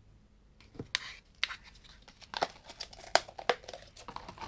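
Paint containers being handled: irregular clicks and rustling, starting about half a second in.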